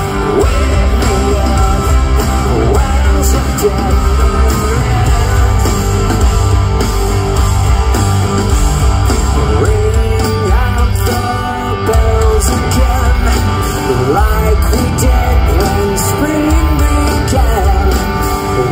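Live rock band playing a loud instrumental passage: electric guitars, bass and drums, with a wavering melodic line over a steady heavy low end.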